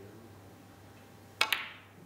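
Snooker shot: the cue tip clicks against the cue ball, and a split second later the cue ball clicks sharply into a red, with a brief ringing tail.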